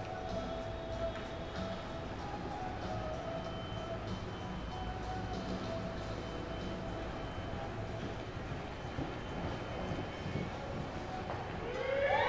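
Steady low rumble of arena background noise with faint music playing under it. Near the end, a louder pitched sound begins, sweeping up and down in pitch.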